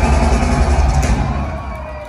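Thrash metal band playing live through a loud PA, heavy bass and drums with distorted guitar; the sound thins and drops away from about a second in.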